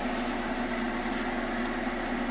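Glassblowing bench torch burning steadily with an even hiss, a low steady hum underneath.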